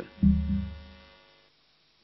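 A low electrical hum that starts suddenly a moment in and fades away within about a second, then dead silence.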